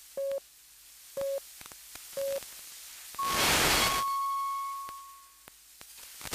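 Radio time signal received over a weak FM broadcast: three short low pips one second apart, then a longer, higher tone marking the hour, which fades out. Steady hiss runs underneath, and a loud surge of static breaks over the start of the long tone.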